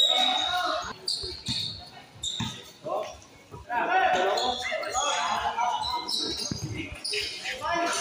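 A basketball bouncing on a concrete court in a live pickup game, several short bounces, mixed with the voices of players and spectators talking and calling out.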